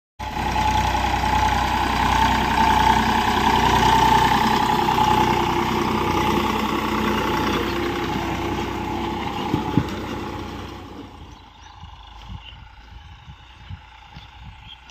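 Eicher 485 tractor's diesel engine running under load as it drives a 7-foot rotavator through the soil, loud and close, with two sharp knocks just before ten seconds. About eleven seconds in it drops to a faint, distant drone.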